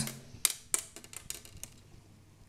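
Old steel strings being taken off a Harmony Meteor H70 electric guitar: light metallic clicks and ticks as the loose strings are handled, two sharper ones about half a second in, then smaller ones that die away.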